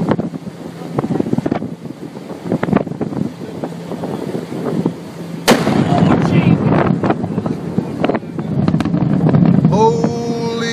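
Shock wave from an explosive volcanic eruption reaching a boat offshore, heard as a single sharp bang about five and a half seconds in, against a noisy background with wind on the microphone. The sound after the bang is louder and noisier than before it.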